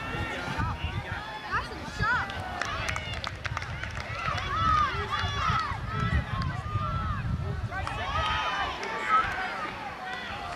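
Several people shouting at once from the sideline of a junior rugby league game, with high-pitched calls overlapping and rising and falling. The shouting is busiest around five to six seconds in and again near nine seconds.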